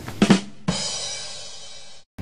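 Short drum sting used as a scene transition: a sudden drum hit with a cymbal crash about two-thirds of a second in, ringing down slowly until it cuts off abruptly.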